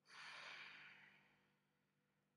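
A woman breathing out audibly in one soft sigh that fades away over about a second and a half.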